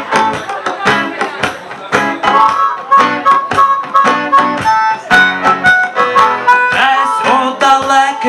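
Acoustic reggae band playing an instrumental passage: a harmonica carries the melody in held, high notes over rhythmically strummed acoustic guitar chords and hand drums.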